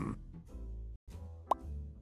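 Quiet background music that cuts out briefly about a second in. About a second and a half in comes a single short 'plop' sound effect rising in pitch, a transition blip between segments.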